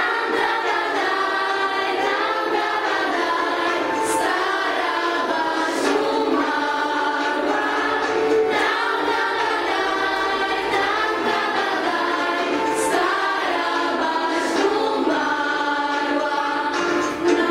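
A group of teenage girls and women singing a song in Polish together, steady and unbroken, the young singers having just learned the Polish words.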